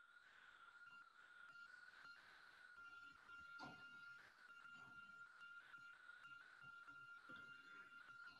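Near silence, with a faint steady high-pitched tone.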